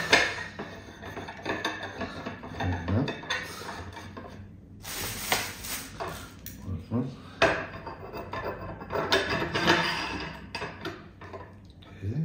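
Irregular clinks, knocks and clatter of metal parts and screws of a microscope stand being handled on a table.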